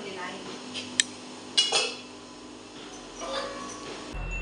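A metal spoon clinking against a metal cooking pot while stirring on the stove: a sharp clink about a second in, then a louder ringing clank a moment later.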